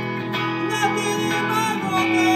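A song performed live: an electric guitar strummed along with a man singing.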